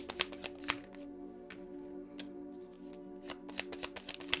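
Tarot cards being shuffled by hand: a quick run of sharp card snaps in the first second, sparser clicks, then another cluster near the end, over soft background music with steady sustained tones.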